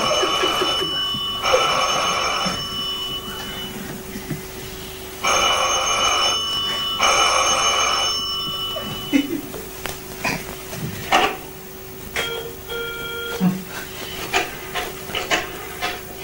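Telephone ringing in two double rings, each ring about a second long, then it stops. Scattered light clicks and knocks follow.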